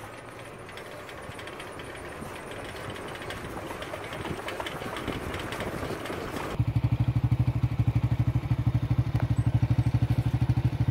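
A pickup truck's engine and tyres coming closer, growing louder. About two-thirds of the way in this stops abruptly and a small engine idling close by takes over, with a louder, rapid, even low thudding.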